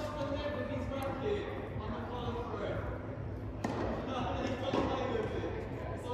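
A tennis ball bouncing on an indoor court, with one sharp knock standing out about three and a half seconds in. The knocks echo around a large hall.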